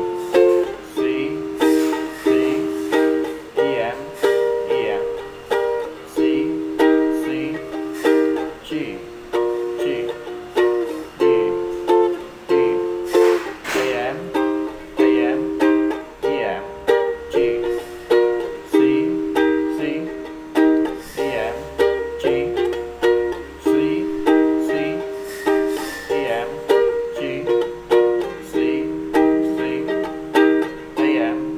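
Small ukulele strummed in a steady rhythm, about two strums a second, playing the G–D–C–C verse chords and moving about halfway through into the Em–G–C–C chorus chords.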